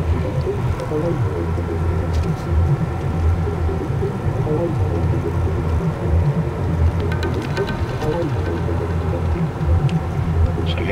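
Inside a moving car: the engine and road noise make a steady low rumble as the car drives along.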